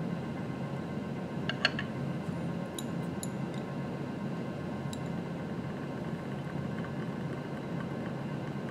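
Steady low room hum with a few faint glass clinks as a small glass beaker is set down on a hot plate and handled. The clinks come about one and a half seconds in, again around three seconds, and once near five seconds.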